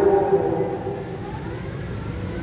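A man's voice holding a drawn-out low syllable for about a second and then trailing off, over a steady low rumble.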